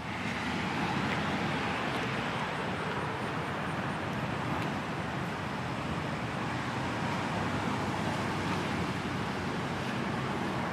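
Steady outdoor background noise of distant road traffic, even throughout, with no distinct events.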